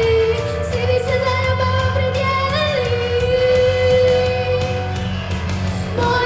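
A girl singing a pop song into a handheld microphone over instrumental backing, holding one long note about halfway through.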